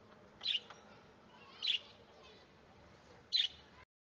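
Three short, high bird chirps a second or more apart over faint background noise; the sound cuts off abruptly just before the end.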